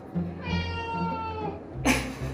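A domestic cat meowing once: one long meow of about a second, gently falling in pitch.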